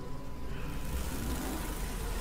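A steady rushing noise over a low rumble, swelling about half a second in.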